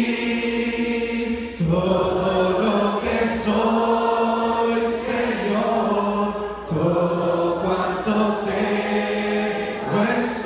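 A church congregation, led by a man singing into a microphone, sings a slow Spanish worship chorus in long held notes, phrase after phrase.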